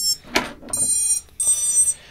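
Quadcopter motors playing the BLHeli32 ESC startup tones as the battery is connected and the ESCs power up: high beeping notes in three short bursts, with a brief click between the first two.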